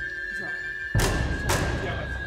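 Background music with a steady held high note over a low drone, broken about a second in by two loud thumps half a second apart.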